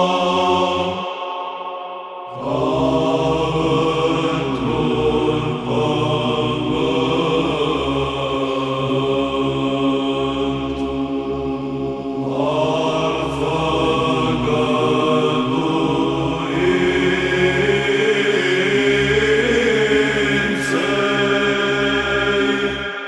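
Romanian Orthodox psaltic (Byzantine) chant in the fifth tone, sung a cappella. The melody moves over a steady held low note. The singing pauses briefly about a second in and resumes just after two seconds.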